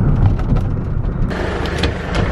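Low road rumble of a taxi driving along. About a second in it gives way to brighter outdoor street noise with a few sharp clicks.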